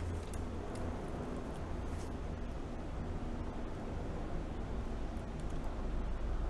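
A few faint clicks of wire strippers and a thin wire being handled, over a steady low hum.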